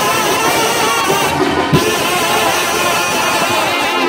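A Mexican brass band of trumpets, trombones and sousaphone playing loudly together, with drum strokes beneath, ringing in a church.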